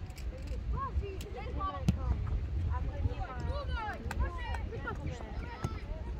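Distant shouts and calls from several voices at a youth football match, overlapping, over a steady low rumble. A few sharp knocks cut through, the loudest about two seconds in.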